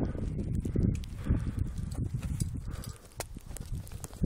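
Wind buffeting the microphone in an uneven, gusty rumble that rises and falls, with scattered sharp clicks and knocks.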